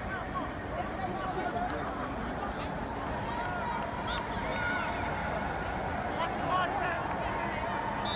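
Faint, scattered voices from people on and around the field over a steady background noise in a large indoor stadium.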